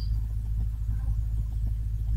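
A steady low hum and rumble, with no sudden sounds.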